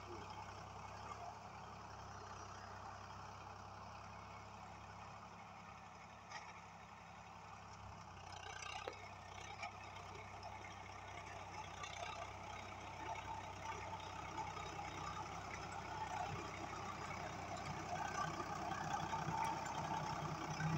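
Swaraj 855 FE tractor's diesel engine running steadily while pulling a rotary tiller through a field. It grows louder over the second half as the tractor comes closer.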